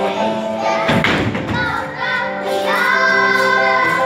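Children's choir singing with instrumental accompaniment, with a short low thump about a second in.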